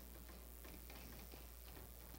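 Near silence in a pause of a lecture recording transferred from cassette tape: a steady low hum and tape hiss, with a few faint scattered ticks.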